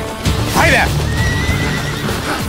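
A horse whinnies once, briefly, about half a second in, its call sliding downward in pitch, over background music.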